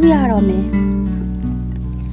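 Speech over background music: a woman's voice narrating in Burmese, falling in pitch in the first half second, over music with steady held notes.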